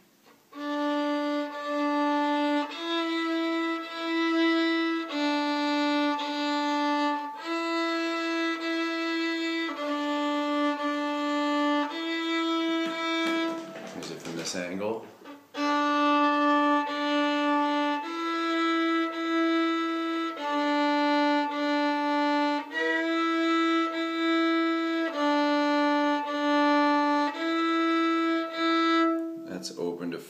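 Fiddle bowed slowly on the D string, alternating between the open D and the first-finger E a step above, two even bow strokes on each note. The playing stops briefly about halfway through for a few spoken words, then the same exercise carries on.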